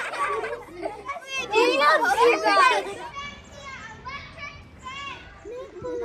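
Children's voices talking and calling out, high-pitched. They are louder in the first three seconds, then quieter.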